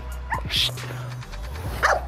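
A dog giving a few short, excited barks and yips, eager for a ball held out of its reach.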